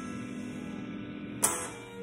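Solid-body electric guitar: a strummed chord rings on, then a sharp strum lands about one and a half seconds in and dies away.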